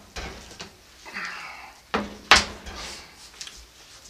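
Hard plastic and metal knocks and a short scrape as a multi-wire soap loaf cutter's metal frame is handled and set down onto its plastic slotted base, with the loudest knock a little over two seconds in.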